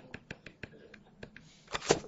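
A rapid, irregular series of light clicks, several a second, from a pointer pressing the arrow key of an on-screen calculator to scroll along a result. A louder, short sound comes near the end.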